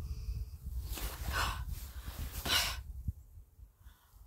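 A woman's two heavy sighing breaths, about a second in and again about two and a half seconds in. Low wind rumble on the microphone runs under them and dies away near the end.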